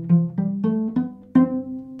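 Cello plucked pizzicato, walking up a C major scale one note at a time across the D and A strings in first position. It rises in quick steps to middle C, which is plucked about a second and a half in and left ringing as it fades.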